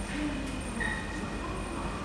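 Subway station concourse ambience: a steady low rumble with a few thin, steady high tones and short faint beeps over it.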